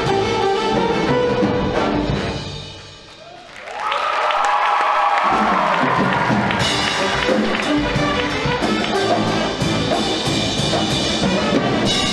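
Live band with brass playing. About three seconds in the music drops away briefly, then a held brass note swells back, the bass returns, and the drums come in with the full band.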